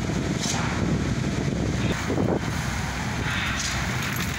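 Steady low outdoor rumble with wind buffeting the phone microphone.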